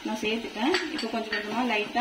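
Wooden spatula knocking and scraping against a pan as sugar is stirred into cooked grated beetroot, with a few sharp clicks about a second in. A voice talks over it.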